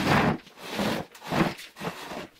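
Makeup organizers and other items being picked up and moved about on a desk: four short rubbing, scraping knocks, the loudest at the start.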